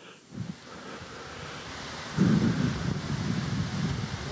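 Soundtrack of a synchronized swimming video playing over a hall's speakers: a noisy rumble that comes up early and swells about two seconds in.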